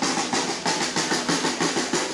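Snare-type drums played by protest drummers, beating out a steady rhythm of sharp strokes, about three or four a second.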